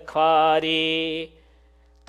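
A man chanting a line of Hindi devotional verse in a melodic, sustained tone. The voice holds one note and breaks off a little past the middle.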